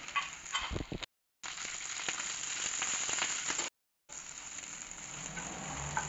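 Slit okra sizzling in hot oil in a wok as it is tipped in, with a few light clatters of the pieces and plate at the start, then a steady frying sizzle. The sound cuts out twice, briefly.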